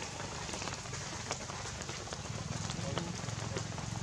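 Rain falling steadily on wet ground and leaves, with many scattered sharp drop ticks over a steady low hum.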